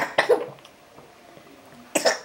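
Short coughs: a quick cluster of two or three at the start and another near the end.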